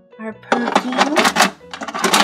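Small plastic hair accessories clattering as they are dropped into the plastic drawer of a toy vanity, a quick run of rattling knocks from about half a second in, over background music.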